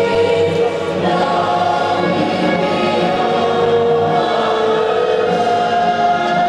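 A national anthem with massed voices singing in long held notes.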